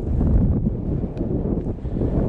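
Wind buffeting the microphone on an exposed summit: a loud low rumble.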